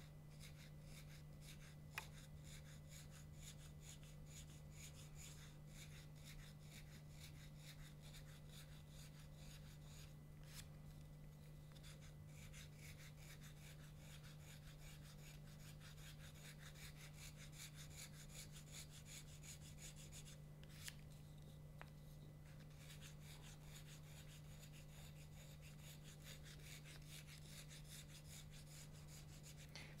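Faint repeated short strokes of a small knife scraping cane, thinning the middle of a tenor krummhorn reed blank as it is profiled, over a steady low hum. A couple of small clicks stand out.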